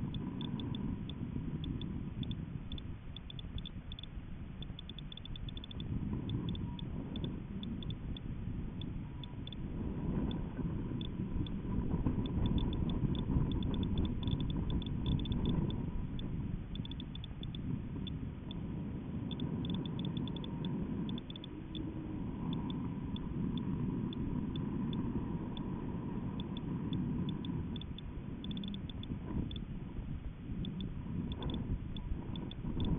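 Uneven low rumble of air moving over the onboard camera's microphone on a high-altitude balloon payload in flight, somewhat stronger in the middle. A faint steady high tone and scattered small ticks run through it.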